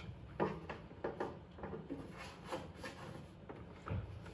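Faint, scattered handling noises, light knocks and rubbing, as a tube is worked onto the spout of a watering can.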